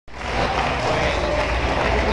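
Loud, steady wash of noise with a deep low hum underneath, from the band's amplified stage rig of guitar, pedals and electronics, starting abruptly.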